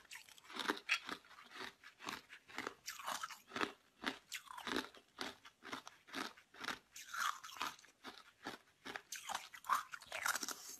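A person biting and chewing red-coloured ice domes, with rapid, irregular crunches several times a second.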